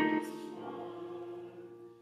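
Hymn singing with instrumental accompaniment: a sung phrase ends just after the start, and the held chord dies away toward the end.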